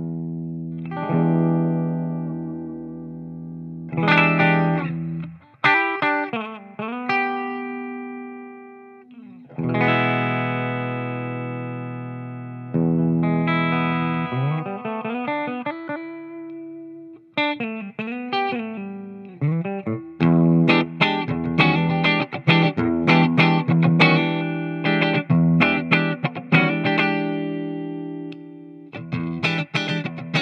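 Electric guitar (PRS SE Custom 24) played through the E-Wave DG50RH all-tube head's Fender-like clean channel with its spring reverb, into a closed-back 1x12 cabinet with a Vintage 30-style speaker. Strummed chords are left to ring out in the first half, then a busier, quicker picked passage takes over from about halfway.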